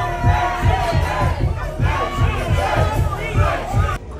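A packed club crowd shouting and chanting along over loud dance-floor music with a heavy, fast bass beat.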